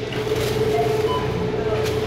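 Steady machine hum of a checkout conveyor belt running: one constant mid-pitched tone over a low drone, with a couple of faint short higher tones near the middle.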